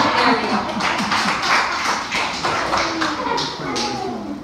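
Audience laughing, with irregular sharp claps scattered through.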